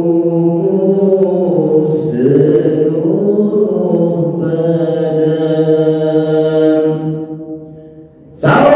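A man singing an Islamic devotional chant (sholawat) solo into a microphone, in long held notes that slide slowly between pitches. The voice fades away in the last second.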